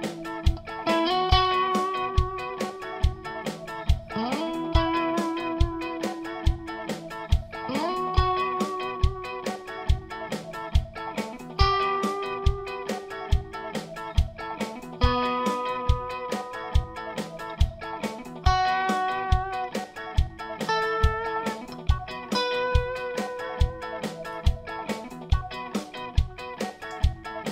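Electric guitar lead over a backing track with a steady drum beat, about two hits a second. The guitar is a sunburst Stratocaster-style. It plays long held notes, some bent up into pitch, each shaken with vibrato of varying width.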